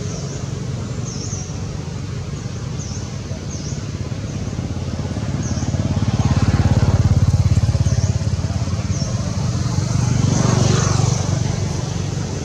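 A motor vehicle engine running with a low pulsing hum, swelling louder as it passes about halfway through and again near the end. Short high chirps repeat over it.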